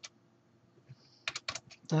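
Computer keyboard typing: digits of a number keyed in, a single click at the start, then a quick run of several keystrokes in the second half.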